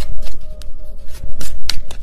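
A mini tarot deck being shuffled by hand: an irregular run of quick card flicks and snaps.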